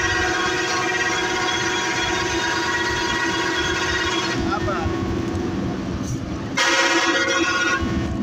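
Bus air horn sounding a long, steady blast of several tones together for about four seconds, then blasting again about six and a half seconds in, over the rumble of the moving bus.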